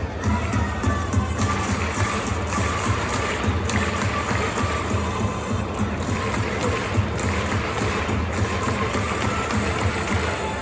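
Baseball stadium cheering music for the batter, with the crowd clapping in time, a few claps a second.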